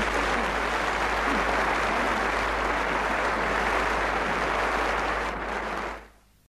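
Concert audience applauding steadily at the close of a performance, cut off sharply at the very end.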